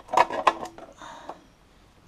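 Light metal clicks and knocks as a motorcycle dash cover is set down over the speedometer housing: a quick run of them in the first second, then a short faint scrape.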